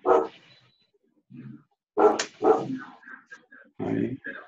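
Dog barking in short, loud barks: one at the start, two about two seconds in, and another near the end.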